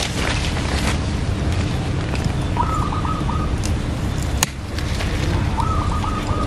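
Outdoor garden ambience: a steady low background rumble, a short chirping bird phrase repeated about every three seconds, and one sharp click about four and a half seconds in.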